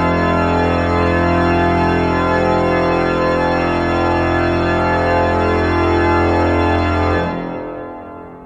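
The Cavaillé-Coll grand organ holding a loud, full final chord. It is released about seven seconds in and dies away in a long church reverberation.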